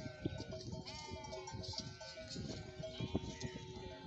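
A flock of sheep and goats bleating, several calls overlapping.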